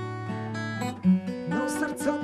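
Acoustic guitar strummed in a slow song, with held notes ringing on and a firmer strum about a second in.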